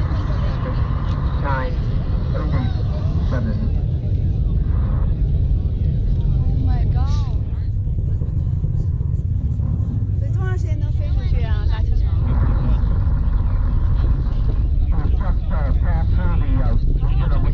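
Distant SpaceX rocket launch: a deep, steady low rumble from the rocket's engines carrying across to the watching crowd, with onlookers' voices and exclamations over it.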